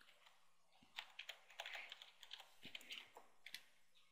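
Computer keyboard typing: a faint run of irregular keystrokes starting about a second in.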